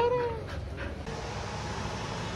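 A cat meowing once: a single call about half a second long that rises and then falls in pitch, right at the start.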